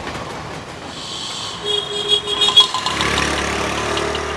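Busy city street traffic: an even haze of engine and road noise from buses, auto-rickshaws and motorbikes, with a short held horn-like tone about halfway through.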